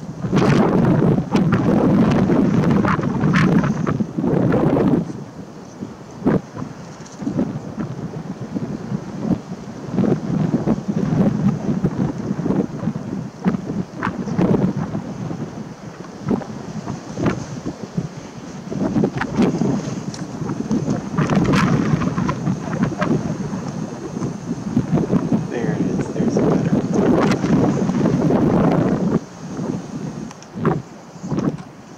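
Wind buffeting the microphone: a loud, low rushing noise that swells in several gusts of a few seconds each and eases in between.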